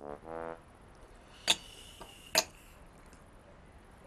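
Two sharp clicks just under a second apart over quiet room tone.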